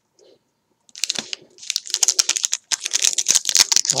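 Foil trading-card pack wrapper crinkling and being torn open, a dense rapid crackle that starts about a second in.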